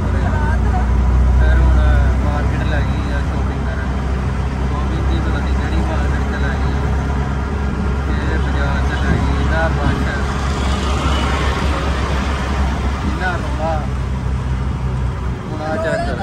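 Auto-rickshaw's small engine running steadily while under way, heard from inside the open passenger cabin, with road and traffic noise around it. A hiss swells briefly about two-thirds of the way through.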